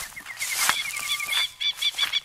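Birds calling in a bush ambience: a fast run of short repeated notes, then a slower series of chirps near the end.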